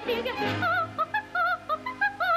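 A soprano singing a run of short, wordless high notes, each with a wide vibrato, over a dance-band accompaniment.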